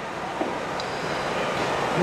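Steady rushing background noise of an open-air setting, slowly growing louder, with a faint thin high tone in the middle.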